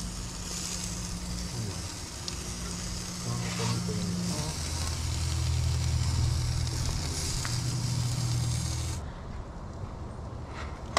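Chicken sizzling on the hot grates of a gas grill as it is brushed with barbecue sauce: a steady, crackling hiss over a low steady hum. The sizzle cuts off about a second before the end.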